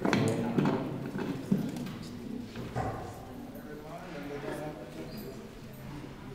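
A microphone being handled and adjusted on its stand, giving several knocks and rubbing sounds in the first second and a half, loudest at the start, then murmured voices.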